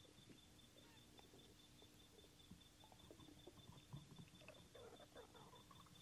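Near silence: room tone with a faint steady hum and a few faint small ticks, mostly in the second half.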